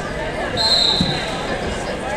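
A short, steady, high whistle blast about half a second in, over gym crowd chatter, with a single thud on the mat about a second in.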